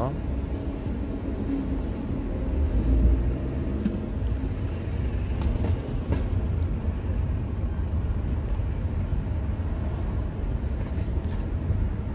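Steady low rumble of a car driving through city traffic, engine and road noise heard from inside the cabin, swelling slightly about three seconds in.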